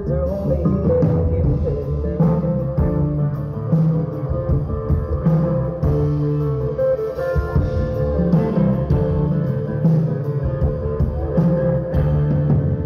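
Live band music: strummed acoustic guitar over bass and drums, with a long held note running through it.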